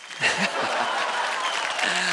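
Studio audience applauding, starting about a quarter second in, just after the contestants are announced, with a few voices calling out over the clapping.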